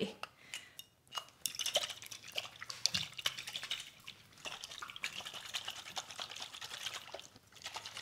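Amber trigger-spray bottle of mixed body oils shaken vigorously by hand: rapid clicking and rattling of the bottle and sprayer head, with the oil sloshing inside, starting about a second and a half in.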